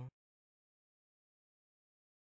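Near silence: a dead-quiet gap between repeats of a spoken word, with only the last instant of the word at the very start.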